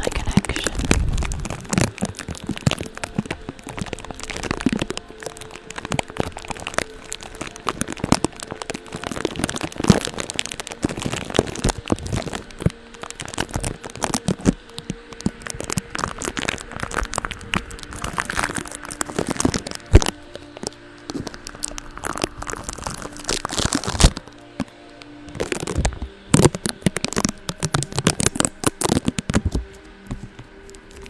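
Makeup brush sweeping over a tape-covered microphone head, giving a dense, uneven run of close crackling and crinkling scratches, with a short lull about three-quarters of the way through.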